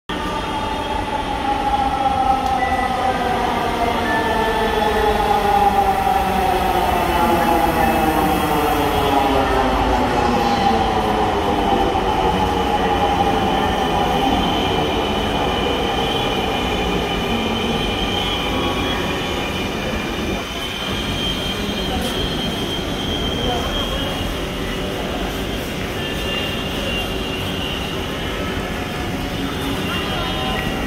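Dhaka Metro Rail electric train pulling into the platform and braking: several tones whine down steadily in pitch over about ten seconds as it slows. It then stands with a steady hum.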